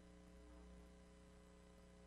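Near silence: a faint, steady hum over low hiss, with no other sound.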